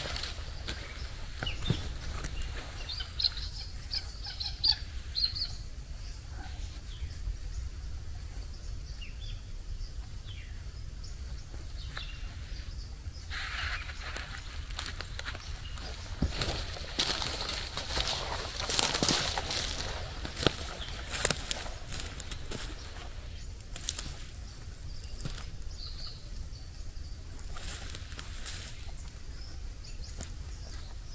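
Nylon webbing tree straps and hammock fabric being handled and pulled around tree trunks: rustling and flapping with scattered clicks, busiest a little past halfway. Footsteps crunch on dry leaf litter, and a few short bird chirps come early on.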